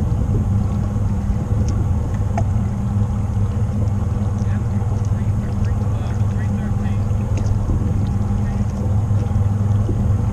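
Bass boat's outboard motor running steadily at low speed, a constant low hum.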